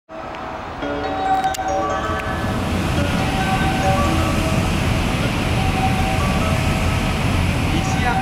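EF210 electric locomotive hauling a freight train, approaching with a steady rumble of wheels on rails that grows louder about a second in. A melody of steady chime-like notes plays over it.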